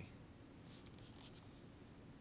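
Near silence: room tone, with a few faint, soft scratchy rustles about a second in.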